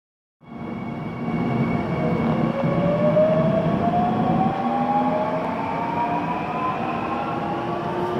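Seoul Line 3 subway train pulling away from a station, heard from inside the car: the traction motor whine rises steadily in pitch as the train accelerates, over a continuous low rumble.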